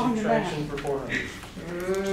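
People's voices: speech trailing off, then near the end one voice holds a long drawn-out vowel.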